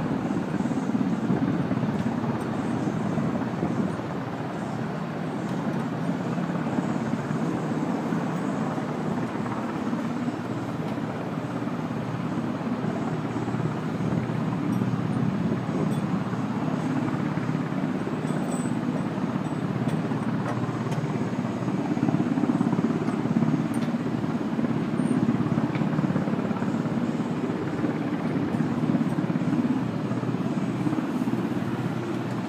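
A steady low mechanical rumble that runs evenly without distinct knocks or strokes.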